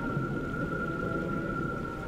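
Cartoon water-healing sound effect: one steady held high tone over a low, grainy rumble.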